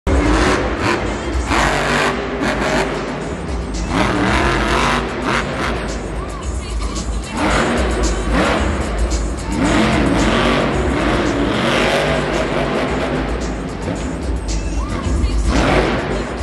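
Monster truck's supercharged V8 engine revving up and down repeatedly under hard throttle as it spins and powers across the dirt, with a hard surge near the end as it launches off a jump. Arena music and a voice over the loudspeakers run underneath.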